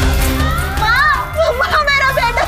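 Background score of the drama: a sustained low music bed, joined about half a second in by a high voice singing wordless phrases that slide up and down in pitch.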